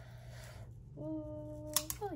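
A woman humming one steady 'mmm' note for just under a second, sliding down in pitch at the end. A short crisp crackle of sticker backing paper comes just before the hum slides down.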